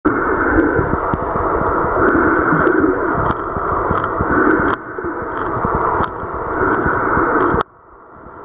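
Muffled rushing water noise picked up by a camera held underwater, with scattered faint clicks and crackles. It dips twice and then cuts off abruptly near the end.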